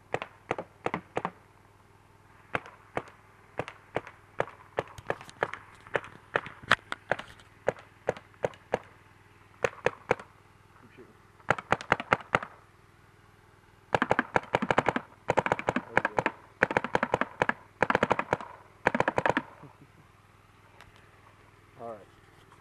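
Electronic paintball marker running on high-pressure air and firing paintballs. Single shots come about two or three a second for the first ten seconds, then rapid strings of shots follow in several bursts.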